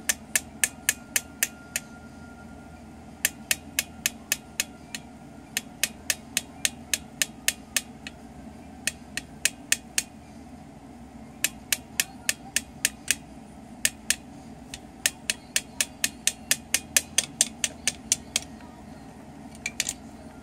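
Sharp, hard tapping on a plastic toy drill, in runs of several taps about four a second, with pauses of a second or two between runs.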